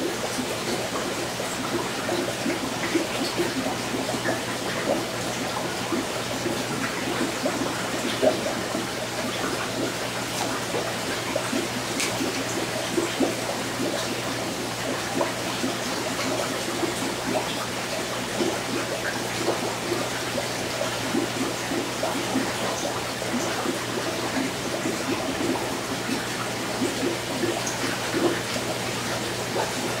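Aquarium filter and air bubbler running: steady bubbling and trickling water over a low, even hum.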